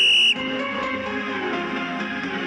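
One loud, short, steady high-pitched beep, lasting about a third of a second at the start, marking the start of an exercise interval. Background music with a steady beat plays underneath and carries on after the beep.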